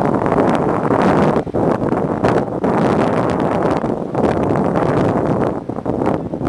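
Wind buffeting the microphone on a moving boat: a loud, rough rushing that swells and dips unevenly.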